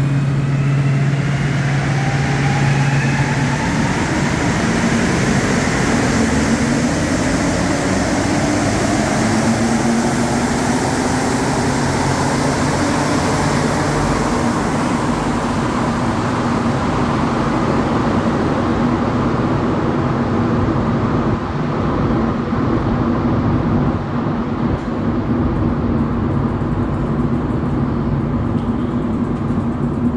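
Montreal Metro Azur (MPM-10) rubber-tyred train pulling out of the station. Its traction motors whine upward in pitch over the first few seconds as it accelerates. The hiss of the train fades from about halfway through, leaving a steady low rumble and hum.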